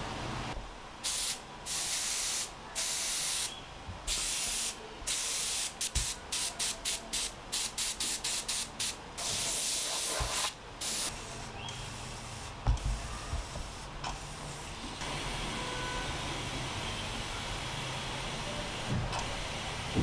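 The three-way air/water syringe of a portable dental unit blowing air in repeated blasts as its trigger is pressed: a few longer blasts, then a quick run of short puffs about two or three a second, then one long blast. A softer steady hiss follows, with a brief knock in between.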